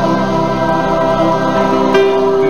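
Gospel music with choir-like voices holding long notes over an accompaniment.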